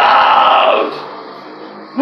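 Man's harsh, screamed metal vocal into a handheld microphone over the song's backing music. The vocal line breaks off about a second in, leaving the quieter backing music.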